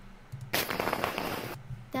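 A crackling burst of noise lasting about a second, starting about half a second in.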